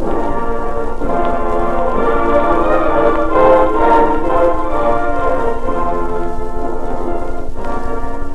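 Orchestral music, a run of held chords, played within a wartime shortwave broadcast and heard off an old 78 rpm disc transfer, thin in the top end, with steady hiss and surface noise underneath.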